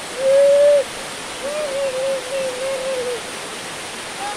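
Small waterfall pouring steadily into a rock pool, with a hooting call over it: one loud held note near the start, then a longer wavering one from about a second and a half to three seconds in.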